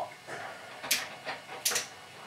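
A few short metallic clicks from a drill press's gearbox and spindle being worked by hand while its speed gear is changed; the motor is not running.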